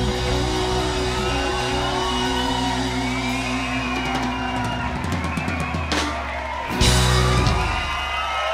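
A live country band ends a song: guitars hold the final chord over drum fills, then a last loud hit lands about a second before the end. An audience whoops.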